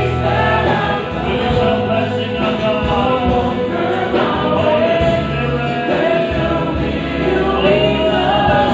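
Live praise-and-worship music: a worship band playing while a congregation sings along, many voices together over sustained low bass notes.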